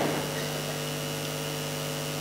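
Steady low hum with several faint steady tones above it: background machine or electrical hum.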